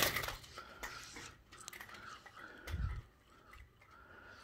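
Rustling and handling noise, with a sharp click at the very start and a dull low thump near three seconds in.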